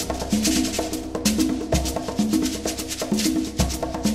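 Instrumental jazz fusion with Brazilian rhythms played by a band: a busy, steady percussion groove over bass and keyboard chords.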